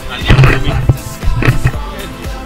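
Two loud bursts of knocking and scraping close to the microphone, about a second apart, over background music.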